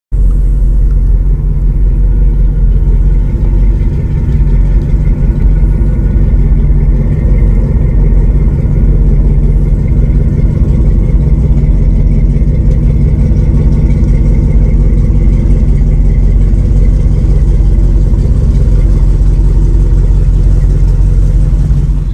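A boat engine running steadily at low speed, loud and close, with a deep hum.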